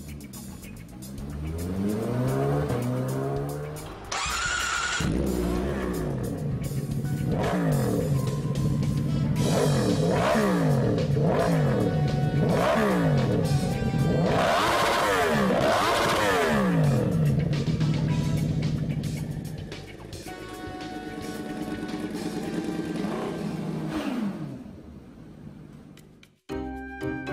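Motorcycle engines revving again and again in rising and falling sweeps, with a short hiss about four seconds in and a steadier engine note near the end. Background music plays under it.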